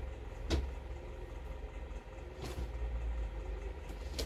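A steady low hum underneath, with a short sharp tick about half a second in and a soft rustle of clothing being handled near the middle.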